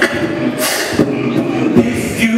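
Live vocal beatboxing through a microphone: low kick-like thumps about once a second, a long hissing snare-like burst between them, and a hummed low tone held underneath.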